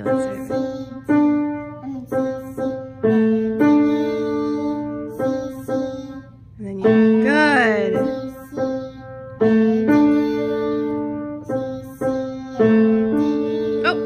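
Acoustic grand piano played by a young beginner: slow single notes and two-note chords, each struck and left to ring, a new one about every half second to second. A brief voice slides up and down about halfway through.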